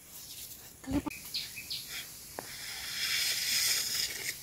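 Hands handling large leaves and a plastic bottle. There is a soft knock about a second in, a couple of short high chirps, then a rustling hiss that builds toward the end.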